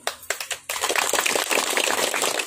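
A group of people applauding: a few scattered claps, then full applause from about two-thirds of a second in.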